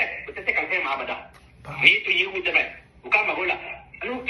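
Speech only: a man talking, in phrases with short pauses between them.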